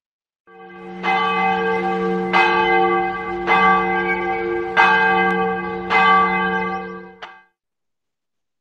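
A large bell ringing, struck five times about a second and a quarter apart, with its ring sustained between strikes. It fades in at the start and is cut off suddenly near the end.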